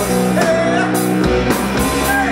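A live rock band playing loudly: electric guitar, drums and keyboard, with a man singing into the microphone.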